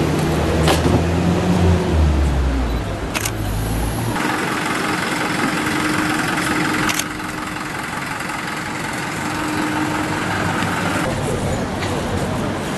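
A vehicle engine idling with a steady low hum, which stops abruptly about four seconds in. It gives way to a thinner, steady street background with a faint steady tone, broken by a few sharp clicks, one about three seconds in and another near seven seconds.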